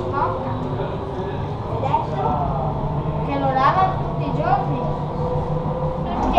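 A Brescia Metro train running along its track, heard from inside the car as a steady low hum and rumble. People's voices break in now and then over it.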